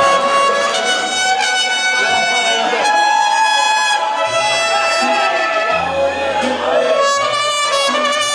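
Mariachi band playing, with violins and trumpets in long held notes. Deep bass notes come in about halfway through.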